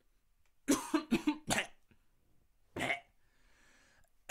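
A man coughing: a quick run of four coughs, then a single cough about a second later.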